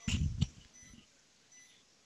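A brief spoken fragment in the first half-second, then near silence: faint room tone with a faint steady high tone.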